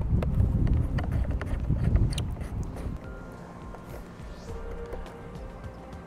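Hands tightening the plastic clamp knobs of a clamp-on towing mirror onto a car's side mirror housing: scattered clicks and small knocks, heaviest in the first half, over wind rumbling on the microphone. Faint background music underneath.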